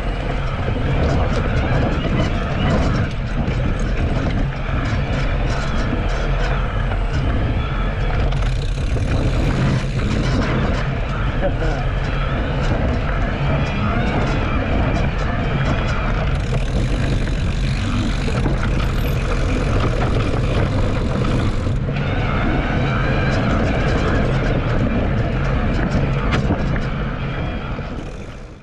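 Wind buffeting an action camera's microphone on a moving electric mountain bike, with tyre and trail noise from riding over dirt and leaf litter. It fades out at the very end.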